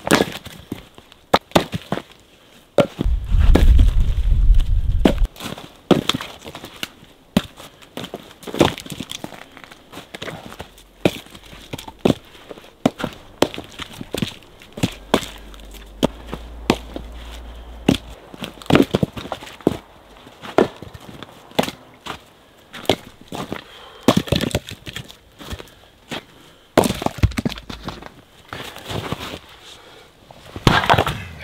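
Short rounds of spruce log being tossed onto a woodpile, landing with irregular wooden knocks and clatters, one to three a second. A low rumble rises for a couple of seconds about three seconds in.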